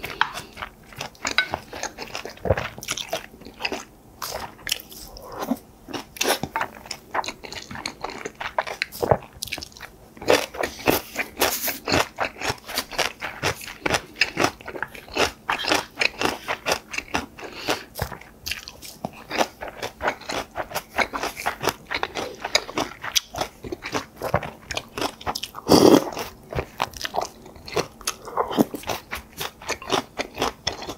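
Close-miked mukbang eating sounds: chewing of a mouthful of bibimbap, a dense, irregular run of small crunches, smacks and wet mouth noises, with a louder mouth sound about four seconds before the end.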